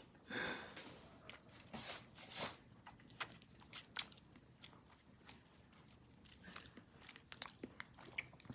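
Faint scattered taps and rustles of a wand cat toy moving against a plastic laundry basket, with the sharpest tap about four seconds in and a few quick taps near the end.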